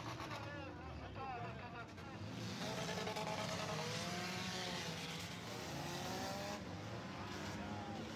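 Engines of a pack of cars racing around a wet track, their pitches rising and falling as they pass. A louder rush of passing cars swells from about two and a half seconds in and eases off about four seconds later.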